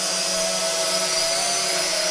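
Mengtuo M9955 X-Drone quadcopter hovering, its motors and propellers giving a steady whir with a few held tones over a high hiss.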